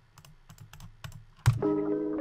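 A few light computer-keyboard clicks, then about one and a half seconds in a sharp click and a melodic loop starts playing back with held, layered notes.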